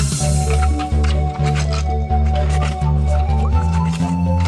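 Background music with held bass and keyboard notes that change every half second to a second, over a light regular beat.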